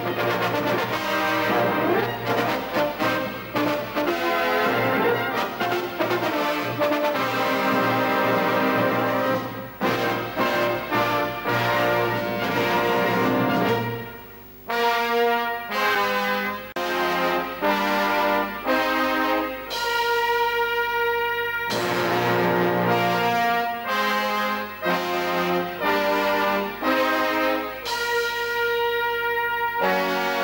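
A brass band of cornets, trombones and tubas playing a concert piece at full ensemble. About halfway through the sound drops briefly, then the band plays a passage of held chords with short breaks between them.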